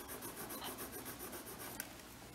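A drawing pencil rubbing across a large sheet of paper in quick, evenly repeated shading strokes, with one short sharp tick near the end.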